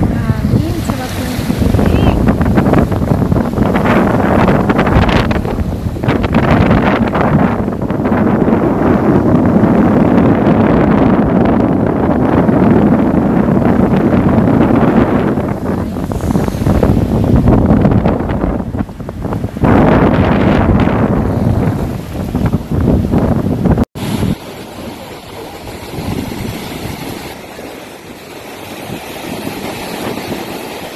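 Wind buffeting a phone microphone over the wash of surf breaking in the shallows, loud and gusty. About three quarters of the way through it cuts off abruptly, and the surf and wind carry on more quietly and steadily.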